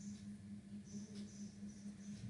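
Quiet background: a steady low electrical hum with faint hiss, heard in a pause between spoken steps.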